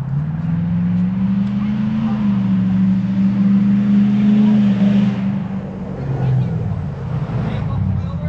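A motor vehicle's engine running close by, its pitch rising over the first two seconds, holding, then dropping away after about five seconds. It is loudest in the middle.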